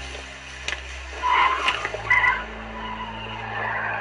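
A car's tyres squealing as it pulls away: two short squeals, a little over a second in and about two seconds in, then a fainter scrub. A steady low electrical hum from the recording runs underneath.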